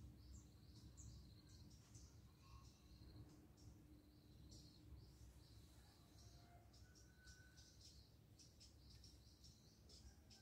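Near silence: faint, high, rapid chirping throughout over a low outdoor rumble, with a few fainter lower calls.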